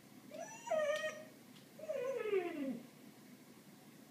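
Labrador–Weimaraner mix dog whining twice: a short whine that rises and then drops, then a longer whine that slides down in pitch. It is the whine of a dog excited by birds outside the window that he cannot reach.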